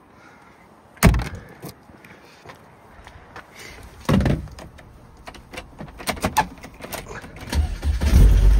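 A heavy slam about a second in, then a duller thump around four seconds and a few light clicks. Near the end the Lotus Elise 111S's Rover K-series engine is started and catches with a low rumble.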